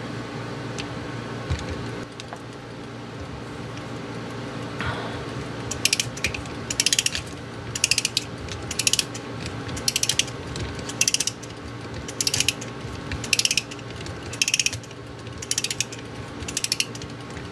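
Click (pawl) of an antique Seikosha wall-clock movement ratcheting over the mainspring's ratchet wheel as the spring is wound up with a let-down key. It comes in short bursts of rapid clicks, one burst per stroke of the key, about once a second from about six seconds in.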